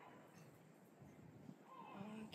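Near silence, with a faint short animal call falling in pitch at the very start and again near the end.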